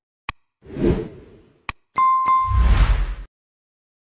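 Edited-in sound effects for an animated like-and-subscribe graphic: a sharp click, a whoosh, two more clicks with a short bright ding at about two seconds, then a second whoosh.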